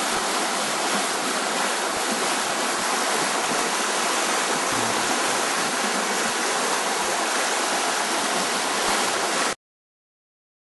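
River water rushing steadily, cut off suddenly about nine and a half seconds in.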